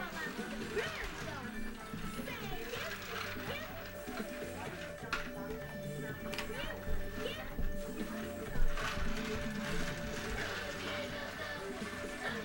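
A children's electronic toy playing a tune, with young children's babbling voices over it.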